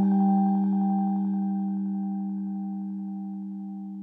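Background music: a single held chord of steady tones that slowly fades away.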